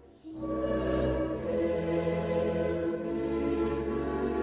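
Background music of a choir singing long held chords, starting up again after a brief drop at the very start.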